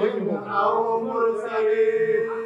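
Male chanting of an Arabic qasida praising the Prophet, sung in long held notes with a short break about half a second in.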